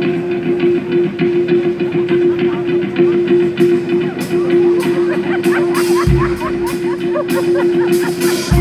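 Live band playing the instrumental opening of a song: guitar notes over a steadily held note, with cymbal strikes coming in about three and a half seconds in and a deep bass hit about six seconds in.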